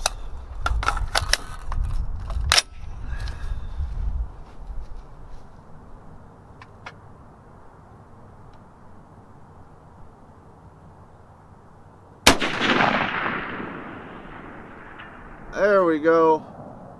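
A single rifle shot from a .308 FN SCAR about twelve seconds in, its report echoing away over about two seconds. Before it come a few sharp clicks and knocks of the rifle being handled.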